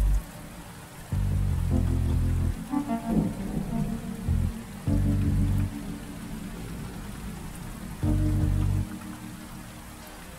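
Steady rain falling on a wet surface, mixed with soft music whose deep held notes swell and fade every few seconds.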